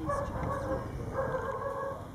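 An animal calling twice, each call a long, steady-pitched note, the second starting a little after a second in.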